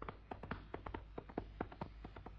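Light, quick tapping, about six or seven sharp taps a second, unevenly spaced, in a clip-clop rhythm.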